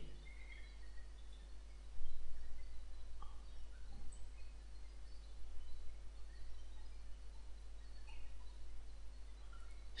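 Steady low electrical hum and background noise picked up by the microphone between spoken lines, with a few faint, scattered chirps.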